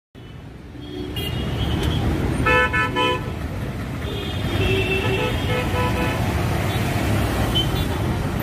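Vehicle horns sounding over a steady low traffic rumble: a quick series of short toots a few seconds in, then longer horn blasts that shift a little in pitch.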